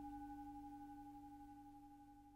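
A faint ringing tone of a few steady pitches, carried over from the mantra chanting and slowly fading away.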